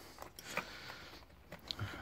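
Faint, sparse clicks and light rustling as hands handle a car seat's frame and wiring, with one sharper tick near the end.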